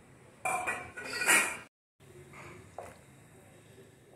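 A utensil clattering and knocking against a cooking pot as tagliatelle is stirred into boiling water, loudest just over a second in and cut off suddenly; a few fainter knocks follow.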